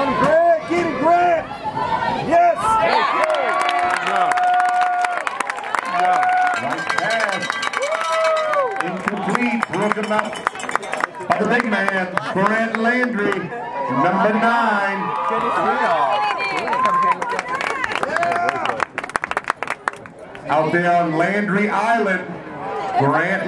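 Football spectators in the stands shouting and cheering during a play, many overlapping voices with a few long, drawn-out yells.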